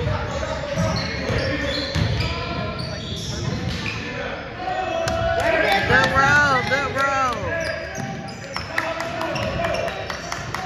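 Basketball being dribbled on a hardwood gym floor, with repeated thumps of the ball, in an echoing hall. Voices call out on and around the court, loudest around the middle, and sharp short squeaks or clicks come near the end.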